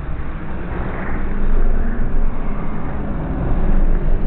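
Low, muffled rumble of event ambience slowed down along with the slow-motion picture, with no high sounds at all.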